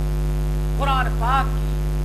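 Loud, steady electrical mains hum running under the recording without a break, with a man's voice saying a couple of syllables about a second in.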